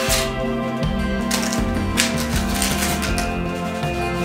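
Instrumental background music with sustained tones, over which come several short crackly rips of painter's tape being peeled off a painted wooden ceiling beam.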